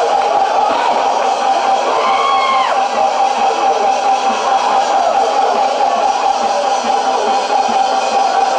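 Music carrying one long held high note, with a few sliding notes about two seconds in, over the steady noise of a large crowd.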